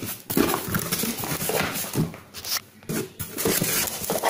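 Cardboard shipping box being opened by hand: flaps and packing rustling and scraping, with irregular small knocks.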